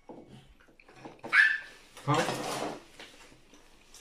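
Short voice sounds: a brief high-pitched cry a little over a second in, then a short spoken "haan".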